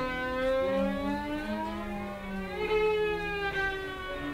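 Violin and cello duet playing long held bowed notes that slide slowly up and down in pitch, the two lines overlapping.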